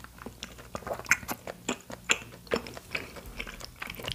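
Close-miked eating sounds: chewing, with many small irregular mouth clicks and smacks.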